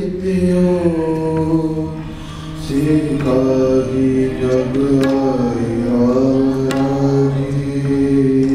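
Sikh kirtan: a man sings a devotional hymn over sustained harmonium chords, with a few tabla strokes. The music dips just after two seconds in, and a new phrase starts at a new pitch soon after.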